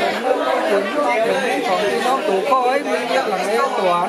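Voices of several people talking at once.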